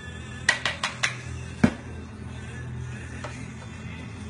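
A long metal bar spoon clinking against glassware: four quick light clinks about half a second in, then one louder knock, over music playing in the background.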